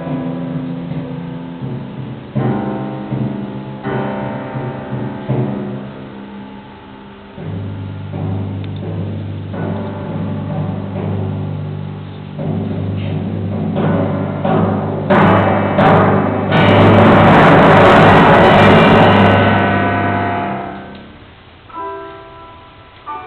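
Timpani and grand piano playing together: struck notes and piano chords, then a sustained low note under the texture as the music swells to a loud climax about three-quarters of the way through and dies away near the end.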